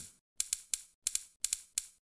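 Buttons on a handheld phone keypad being pressed as someone types a message: a run of short, sharp clicks at an uneven pace, several coming in quick pairs.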